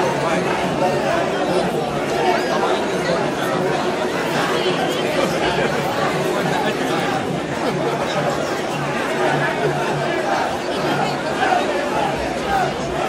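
Dense crowd of mikoshi bearers and onlookers, many voices talking at once in a steady din.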